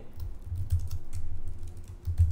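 Computer keyboard typing: a series of irregular keystrokes as a line of code is entered.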